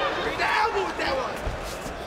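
Shouted voices over arena background noise, with a dull thud about a second and a half in.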